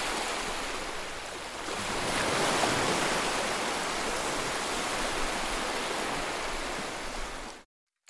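Ocean waves washing onto a beach, a steady rush that swells a little about two seconds in and cuts off suddenly near the end.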